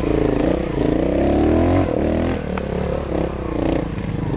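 Single-cylinder four-stroke engine of a Montesa 4RT trials motorcycle, heard up close, its revs climbing over the first two seconds, then dropping and wavering up and down as it is throttled on and off.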